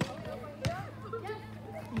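Children's voices talking, with two sharp knocks about two-thirds of a second apart at the start.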